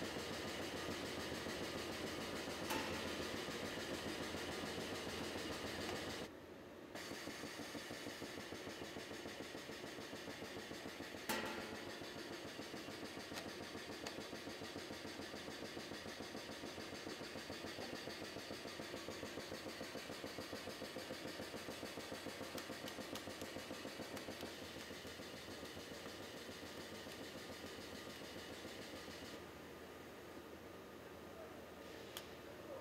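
Steady machinery hum of a battery assembly line, with two sharp clicks about 3 and 11 seconds in and a brief dip in the hum a little after 6 seconds.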